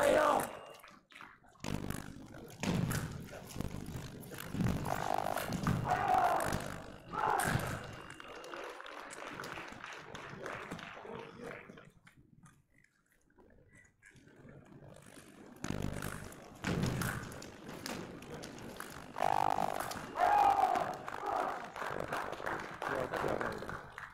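Indistinct voices in a large, echoing sports hall, with scattered thuds and taps. It goes quieter for a few seconds midway.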